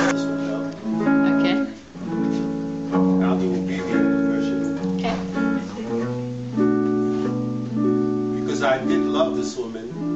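Archtop guitar played in chords, each held chord ringing for about half a second to a second before the next.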